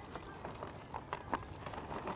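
Wood-chip mulch being poured from a bucket onto loose soil around a young tree: a faint rustle of falling chips with a few light scattered ticks.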